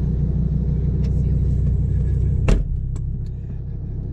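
Audi R8 engine idling with a steady low rumble, heard from inside the cabin. About two and a half seconds in, the passenger door shuts with a single heavy thump, and the engine sounds a little quieter afterwards.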